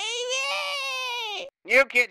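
A voice acting out a long, drawn-out crying wail, held for about a second and a half, then a brief loud vocal sound near the end.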